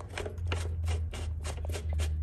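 A metal nut being spun off a threaded steel shaft by hand: irregular light clicks and scrapes of metal on metal, over a low steady hum.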